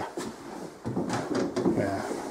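Quiet, indistinct voices talking in a small room, with a few light knocks.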